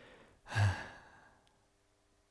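A man sighs once: a short breathy exhale about half a second in that trails off within a second, then near silence.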